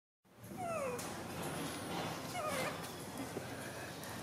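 Baby macaque giving two short calls that each fall in pitch, the second coming a little under two seconds after the first.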